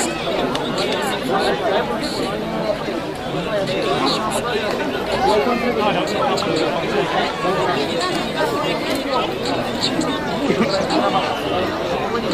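Steady chatter of many spectators talking over one another, with no single voice standing out.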